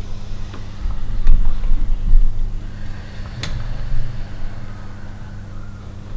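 Low steady hum with rumbling surges in the first couple of seconds, and a single sharp click about three and a half seconds in.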